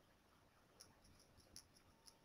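Near silence: room tone with a few faint, short clicks, about a second in and again about halfway through.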